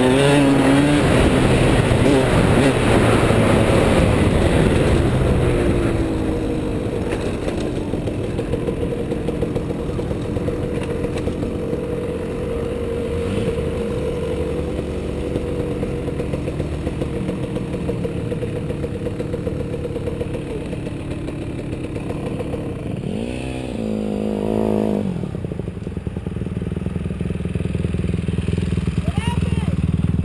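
Motocross bike engine running under load as it is ridden, revving and easing off through the gears, loudest in the first few seconds and then settling to a steadier note, with a quick rise and fall in revs near the end.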